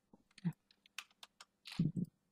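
Quiet, scattered computer keyboard key presses and clicks as text is edited. There is a brief low sound near the end.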